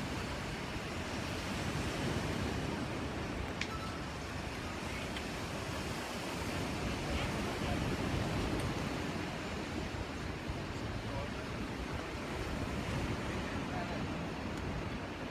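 Steady rushing wash of sea surf breaking on a sandy beach.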